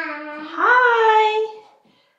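A toddler vocalizing in long sing-song tones: a held note, then a glide up to a higher note held for about a second.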